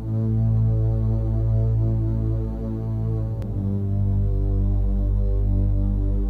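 Low, steady synthesizer drone with a deep hum and layered sustained overtones, opening a 1997 trance track; it starts abruptly.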